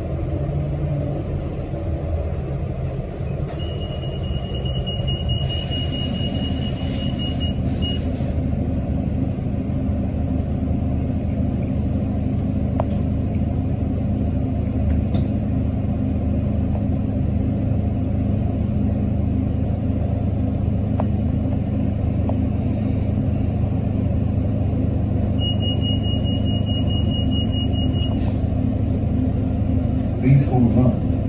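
Articulated city bus running, its engine and road rumble heard from inside the passenger cabin. A high, steady squeal sounds twice over the rumble, once for about four seconds early in the ride and again briefly near the end.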